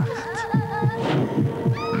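Horror-trailer soundtrack: a low pulsing throb like a heartbeat under a steady droning hum. Wavering high tones come in about half a second in, and a short rising high cry comes just before the end.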